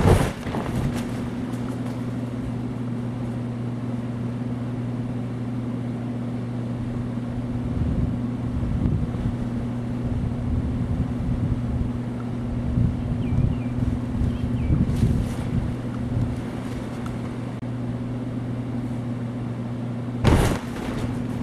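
Electric blower keeping a stunt airbag inflated, running with a steady hum. A sharp thump sounds right at the start, and uneven low rumbling comes and goes in the middle stretch.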